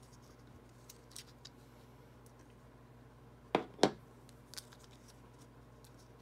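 A CB09 blade holder being handled against a plastic Cameo 4 blade adapter that it is too big to fit: a few faint ticks, then two sharp clicks about a third of a second apart a little past halfway, and a couple of small ticks after.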